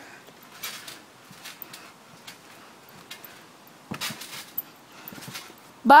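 A few soft thumps of someone bouncing on a backyard trampoline mat, about a second in and again about four seconds in, over a quiet background.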